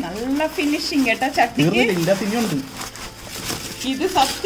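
People talking in conversation, with faint rustling of cardboard and polystyrene packaging.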